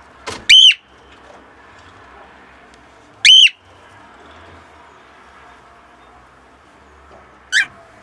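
Cockatiel calling. A short note runs into a loud call that rises and falls in pitch about half a second in. A matching loud call comes about three seconds later, and a shorter, quieter one near the end.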